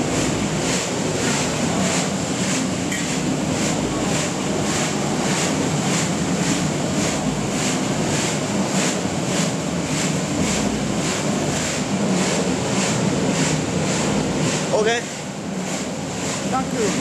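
Rotating stainless-steel seasoning drum running: a steady motor hum with corn curls tumbling and rattling inside, in a regular pulse about three times a second.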